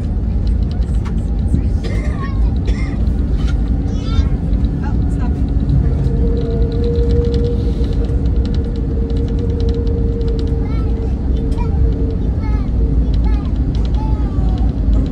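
Cabin noise inside an Airbus A321neo rolling on the runway after landing: a loud, steady low rumble from the engines and wheels. A steady whine joins about six seconds in and fades out near the end.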